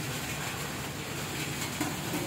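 Steady background noise with a faint low hum and no distinct event, apart from one small tick near the end.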